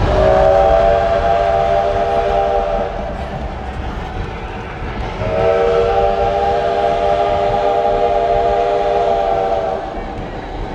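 Steam locomotive whistle sounding a chord of several tones in two long blasts, the first about three seconds and the second about four and a half, over the steady rumble of the train running.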